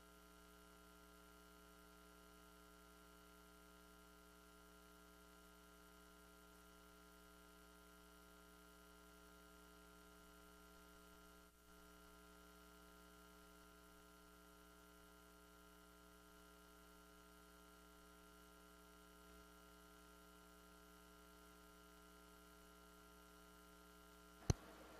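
Near silence apart from a faint, steady electrical hum with many overtones, the background hum of the audio line.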